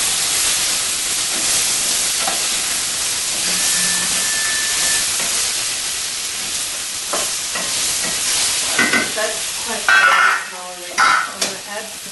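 Food sizzling steadily in a hot pot on a stovetop, with a few short knocks and clatters in the last few seconds.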